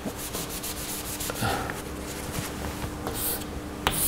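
A cloth rubbing against a chalkboard as chalk writing is wiped off, followed near the end by a few sharp taps of chalk on the board as writing begins.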